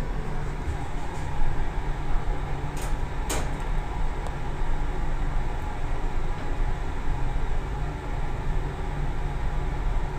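Steady hum and low rumble inside a Toshiba Elemate Cerebrum VF elevator car, with two light clicks a little after the start.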